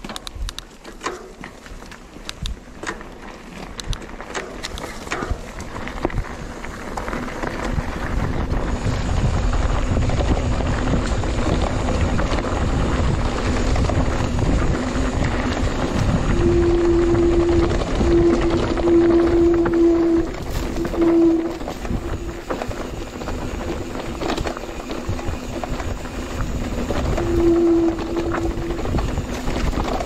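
Mountain bike rolling over a dirt singletrack: rattles and knocks from the bike and tyres at first, then rumbling wind on the camera microphone that builds as the bike picks up speed. A buzzing tone comes and goes in the second half.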